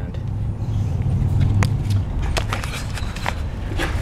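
A handful of short sharp clicks from handling the shift cable end, locked onto the 02J gearbox's selector lever once the cable slack is taken up, over a steady low rumble.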